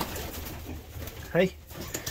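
Racing pigeons cooing softly, with a short spoken "Hey" a little past halfway.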